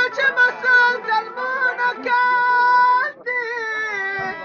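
Folk music: a high-pitched singing voice over a plucked string lute, with quick ornamented notes, then one long high note held for about a second, then a wavering, sliding line.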